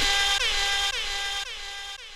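Dub sound-system music cut down to its echo tail: with the bass gone, a pitched tone keeps repeating through the delay about twice a second, each repeat dipping in pitch at its start and coming back a little quieter as it fades out.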